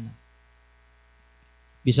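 Faint steady electrical mains hum from the microphone and sound system, heard in a pause of about a second and a half between a man's spoken words.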